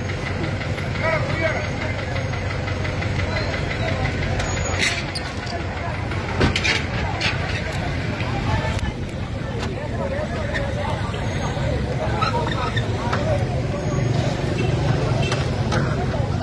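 Steady low rumble of a vehicle engine running, with people's voices in the background.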